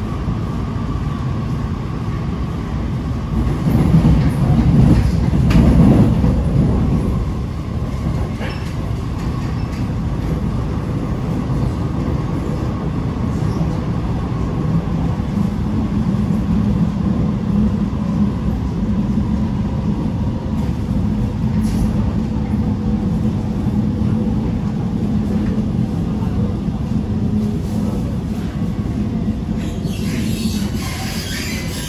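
Inside an Alstom R151 metro train running along the line: a steady rumble of wheels on rail, swelling louder about four to seven seconds in. A low steady hum joins about halfway through.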